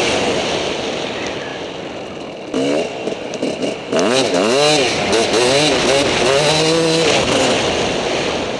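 Suzuki RM250 two-stroke motocross engine, a single cylinder, revving under a rider. The note fades at first. About two and a half seconds in it turns choppy with short throttle blips, then rises and falls in pitch several times.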